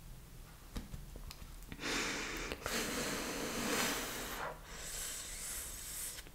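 A person breathing heavily, in three long, noisy breaths starting about two seconds in. There is a faint click just before that.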